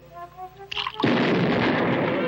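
A few soft plinking notes, then about a second in a sudden loud cartoon explosion that rumbles on: the chemistry mixture blowing up when acid is added to it.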